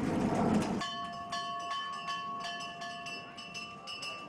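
A noisy rumble cuts off suddenly about a second in, giving way to metal bells ringing, several steady tones held under repeated sharp strikes.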